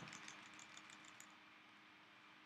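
Faint computer-keyboard keystrokes, a quick run of taps during the first second or so as typed text is deleted, then near silence.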